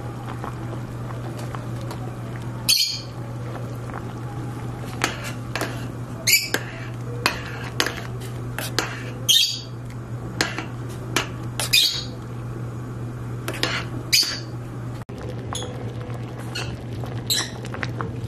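Metal spoon stirring boiling beans in a stainless steel pot, striking and scraping the pot in short, sharp, high-pitched sounds every second or so, over a steady low hum.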